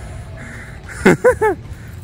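A person's sudden high-pitched yelp, falling steeply in pitch, followed by three quick, short laughing calls, about a second in.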